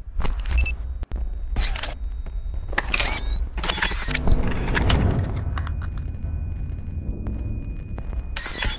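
Sound-designed logo sting: a deep bass rumble under a series of sharp glitchy hits, with a rising whistling sweep about three seconds in, easing off toward the end.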